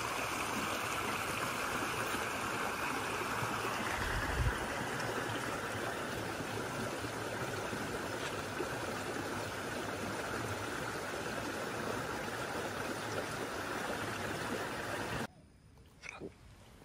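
Shallow stream rushing steadily over rocks and stones in a stone-lined channel, with a brief low thump about four seconds in; the sound cuts off abruptly near the end.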